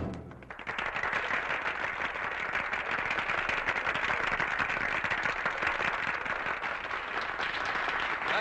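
A film audience applauding steadily: a dense, even patter of many hands clapping. It starts just after the orchestra's music cuts off at the very beginning.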